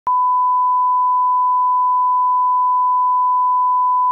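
Line-up test tone of a programme countdown clock: one loud, unbroken pure tone at a single steady pitch, switching on with a small click just after the start.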